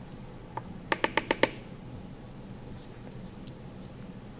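Light plastic clicks as a toothbrush is picked up and handled for slipping and scoring clay: a quick run of four taps about a second in and a single tap near the end, over faint room hum.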